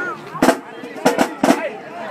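Marching drumline drums struck in four loud, sharp hits at uneven spacing, one near the start and three close together about a second in, over crowd chatter.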